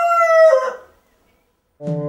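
The end of a rooster's crow, a long held note that dies away under a second in. After a short silence, music starts near the end.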